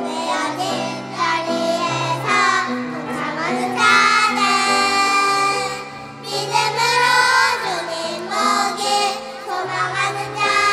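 A group of young children singing a Korean worship song together with adult women, over instrumental accompaniment with steady held bass notes.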